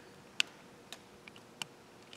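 A few light, sharp clicks, four in under two seconds with the first the loudest, over a faint steady room background.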